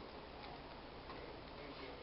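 Quiet room tone in a small room, with a few faint ticks.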